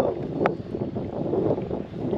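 Wind buffeting the microphone aboard a small skiff on open water, a steady rumbling rush, with two sharp clicks: one at the start and one about half a second in.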